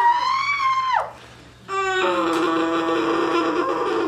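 A girl screams in pain during an ear piercing: a high-pitched scream for about a second, then after a short break a long, steady, lower moan held through the towel she is biting.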